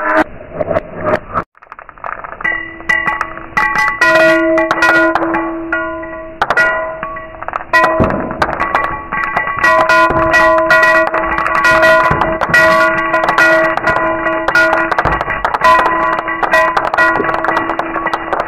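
Small beads dropping one after another into clear glass dishes: a stream of quick clicks, each setting the glass ringing with steady tones that hang on between drops. After a brief gap about a second and a half in, the drops continue into a footed glass dessert dish.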